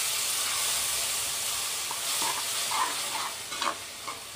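Ground mint masala sizzling in hot oil in an aluminium pressure cooker as a spoon stirs it, with a few light scrapes of the spoon on the pot. The sizzle eases off a little toward the end.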